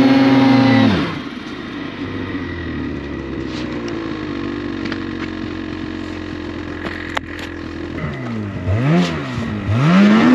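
Ski-Doo two-stroke snowmobile engine held at high revs with snow spraying from the track, dropping to a steady idle about a second in. Near the end it is blipped up and down several times, the last rev the loudest.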